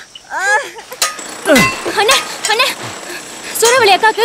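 Voices speaking or calling out, with a few metallic clinks about a second in, typical of hand tools striking on a building site.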